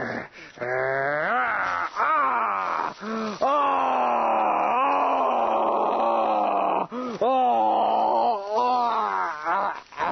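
A man's theatrical dying groans and wails: a string of long, drawn-out cries swooping up and down in pitch, with short breaks between them.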